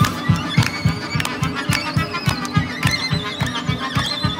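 Live Ukrainian folk instrumental band playing a lively tune: violin carrying the melody, with vibrato near the end, over accordion and a drum kit beating about four times a second.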